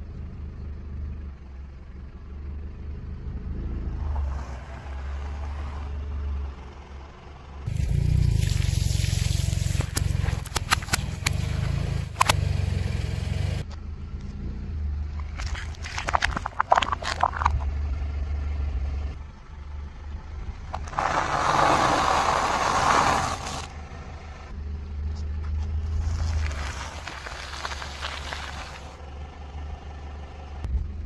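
A car tyre rolling slowly over food and packaging on asphalt, crushing it in several separate episodes. The longest is a run of crunching with many sharp cracks, then comes a shorter cluster of cracks, then two stretches of grainy crackling. A low, steady engine rumble runs underneath throughout.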